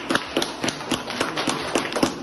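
Applause from a small group of people clapping their hands, the claps uneven and overlapping, several a second.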